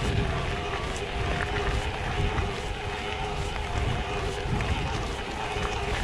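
Mountain bike being ridden over a dirt trail: low, uneven rumble of wind and tyres on the camera microphone, a steady mechanical whine from the drive, and scattered small clicks and rattles from the bike.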